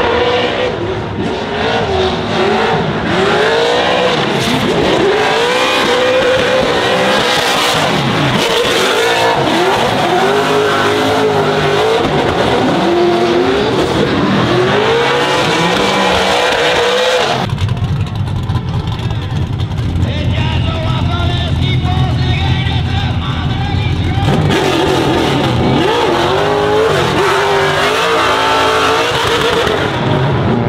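Two drift cars battling in tandem, their engines revving up and down in repeated sweeps with tyre squeal as they slide. About halfway through the sound switches to a steadier, lower engine note for several seconds before the rising and falling revs return near the end.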